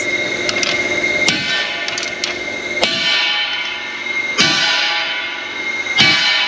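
Sledgehammer blows on a steel bracket held in a vise, hammering the bent metal straight: a few heavy strikes about a second and a half apart, each leaving the steel ringing.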